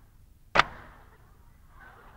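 A single short, sharp tap about half a second in, against quiet room tone.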